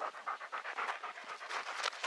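A dog panting quickly and evenly, about five short breaths a second.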